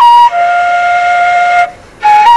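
Background music: a solo flute melody, a short note followed by one long lower held note that stops just before a brief pause.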